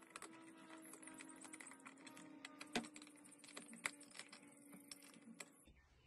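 Faint, irregular clicking of a flathead screwdriver turning the worm screw of a metal hose clamp as it tightens around a glass jar, with faint background music.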